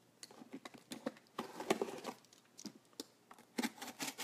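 A utility knife cutting the tape on a cardboard box: irregular light scratches and clicks.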